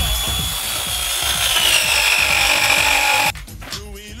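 A battery-powered pipe press tool running under load as it presses a copper fitting. Its motor whine falls slowly in pitch as the press builds, then stops abruptly about three seconds in.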